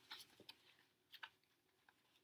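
Near silence, with a few faint ticks from the pages of a picture book being turned.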